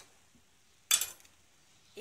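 A single sharp clink of a metal utensil against the cooking pot about a second in, ringing briefly.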